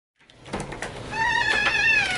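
An animal's long, high, wavering cry, starting about a second in and sliding down in pitch at the end, after a few faint clicks.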